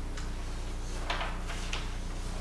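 Loose sheets of paper handled at a wooden lectern: a few soft rustles, about a second in and again near the end, over a steady low hum.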